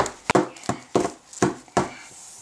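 A series of about six to eight short knocks and taps: plastic dolls and toys being handled and set down on a wooden tabletop.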